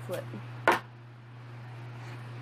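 A fish-food canister, flipped by hand, lands on a wooden tabletop with one sharp knock about two-thirds of a second in, over a steady low hum.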